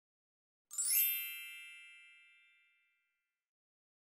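A single bright chime for the channel's logo: a ding that strikes just under a second in and rings out, fading over about two seconds.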